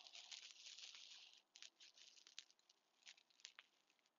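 Near silence: faint background with a soft hiss for about the first second and a half, then a few scattered faint ticks.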